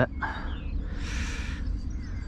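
A hooked sea-run trout splashing at the water's surface while being played on a lure, a short splash about a second in, over a low steady rumble.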